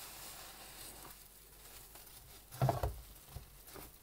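Large foam car sponges squeezed by rubber-gloved hands in a basin of sudsy Dettol solution: a faint fizz of suds at first, then two loud wet squelches close together about two and a half seconds in, and smaller ones near the end.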